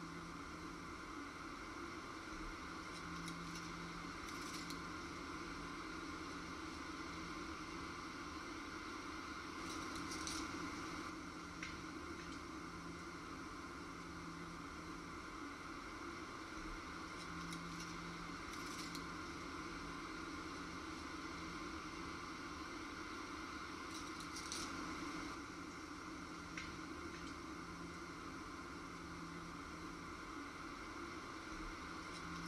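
Steady faint background hiss with a few brief, soft rustles of dry leaves, coming roughly every seven seconds.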